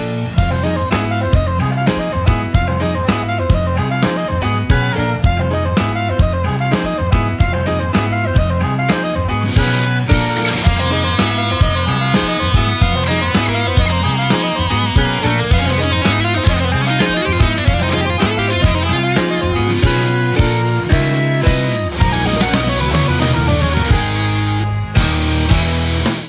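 Instrumental progressive rock passage: electric guitar, bass and drum kit playing to a steady beat. A brighter, denser layer joins about halfway through.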